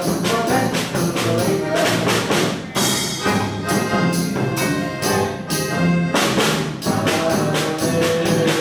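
Live polka band playing an instrumental: accordion carrying the tune over a snare drum and a bass drum beating a steady, quick rhythm.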